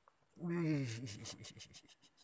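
A man's short exclamation with falling pitch, then a rapid run of light clicks, about ten a second, from a spinning reel being wound in on a hooked giant freshwater prawn.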